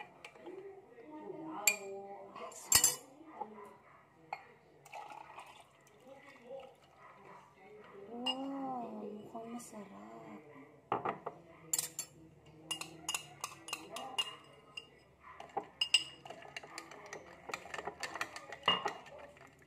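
Metal spoon clinking against a drinking glass while a cocoa-and-milk drink is stirred and poured from one glass into another, with a quick run of clinks in the second half.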